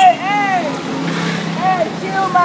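Drawn-out vocal calls, two in the first half-second or so and another near the end, rising then falling in pitch, over the steady noise of street traffic.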